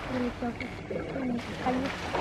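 Indistinct voices talking in the background, with a thin steady high tone lasting under a second about halfway through.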